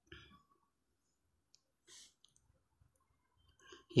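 Near silence with a few faint, short clicks: one at the start, one about two seconds in, and one just before the end.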